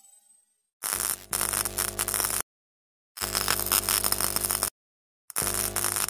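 Electronic static sound effect in three bursts of about a second and a half each. Each burst is a hiss with a buzzing hum under it and cuts off sharply, with silence between the bursts.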